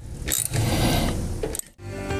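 Scraping and rustling of a flexible corrugated plastic vacuum hose being worked by hand onto a duct fitting, with a sharp scrape near the start. Music begins just before the end.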